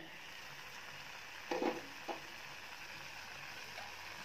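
Faint, steady sizzle of chopped pineapple cooking in a steel pot just uncovered, with a brief sound about a second and a half in.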